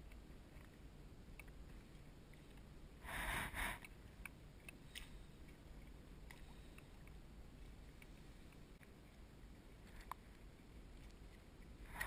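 Mostly quiet, with scattered light clicks and knocks of fishing gear being handled in a plastic kayak, and one short, louder burst of noise about three seconds in.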